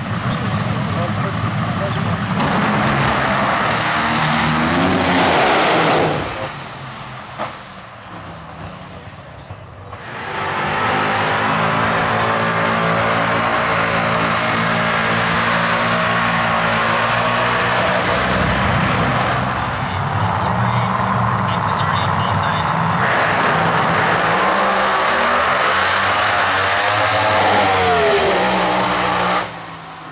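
A race car engine run hard for a few seconds, cut off abruptly. Then, from about ten seconds in, a supercharged burnout car's engine held at high revs with the tyres spinning, the engine pitch rising and falling near the end.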